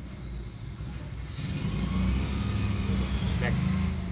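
Low rumble of a motor vehicle engine that grows louder about a second and a half in, with a short voice-like sound near the end.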